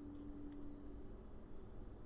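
Quiet room tone: faint steady background hiss with a faint low hum that fades out about halfway through, and no distinct sound events.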